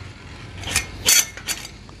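A stainless-steel stop piece on a homemade casket lowering frame being raised by hand into its blocking position: a few short metallic clinks and scrapes about a second in.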